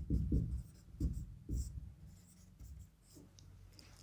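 Marker pen writing on a whiteboard: a run of short scratchy strokes as a line of words is written, most of them in the first two seconds and fainter ones after.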